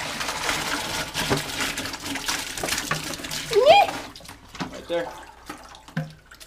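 Water and live shrimp poured from a plastic bucket into a plastic colander in a sink, a steady splashing pour that stops about four seconds in. Just before it ends, a short gliding squeal rises and falls.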